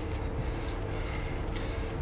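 Steady low rumble of a car driving along.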